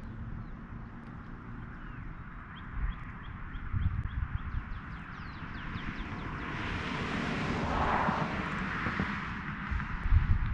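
Small birds chirping in quick repeated high notes, with a rushing noise that swells to a peak and fades over a few seconds in the second half.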